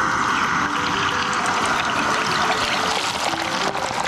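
Hot cooking oil sizzling in a small pot as a piece of meat is lowered into it: a dense hiss with small crackles that thins out toward the end.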